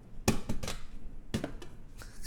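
Three sharp knocks of the Blitzwolf BW-LT9 LED lamp's hard plastic shell against the desk as it is handled: a loud one about a quarter second in, another half a second in, and a third just past a second.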